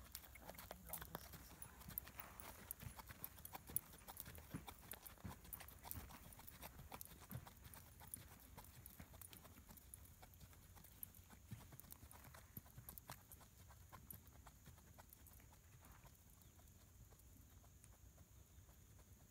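Icelandic horse's hooves clip-clopping on a sandy arena, fading as the horse moves away.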